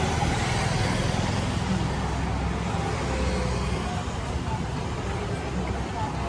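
Steady road-traffic noise with a low rumble of passing vehicles.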